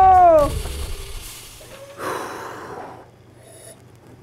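A person's long, high-pitched scream held on one note, bending down and cutting off about half a second in. It is followed by a fading hiss and a short rushing burst around two seconds in, then quiet.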